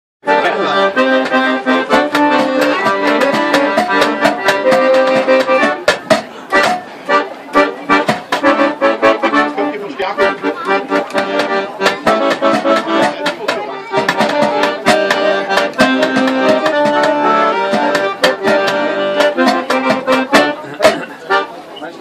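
Piano accordion playing a lively tune, accompanied by hand-drumming on the metal lids of drink containers, in a fast, steady rhythm of sharp taps.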